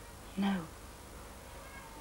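Only speech: a woman says one short "No" about half a second in. Otherwise quiet room tone.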